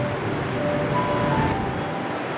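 Soft, slow background music: single held notes stepping from one pitch to another every half second or so, over a steady hiss.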